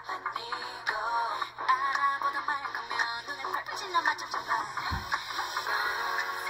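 K-pop song playing: a girl group singing over an electronic dance-pop backing, with a deep bass hit shortly before the end.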